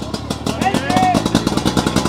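Portable fire pump's engine running with a fast, even firing beat, just started and getting louder, with men shouting over it.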